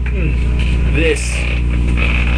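A man's brief wordless vocal sounds, two short exclamations, over a steady low hum.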